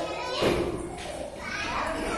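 Young children's voices chattering and playing in a large room or hall, with a louder burst about half a second in.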